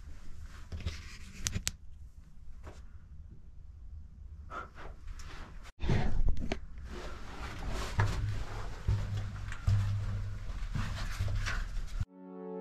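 Scuffs, small knocks and steps of a person moving along the dirt floor of a narrow mine tunnel, over low rumbling camera-handling noise. The sound drops out for an instant a little before halfway, then carries on louder.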